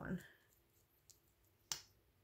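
A plastic mascara tube being opened: a faint click, then one sharp click near the end as the wand is pulled free of the tube.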